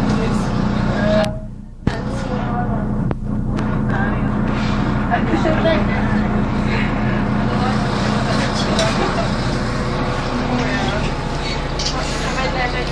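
City bus interior with the engine running as a steady low drone, and passengers talking over it. The sound drops away briefly about a second and a half in, then returns.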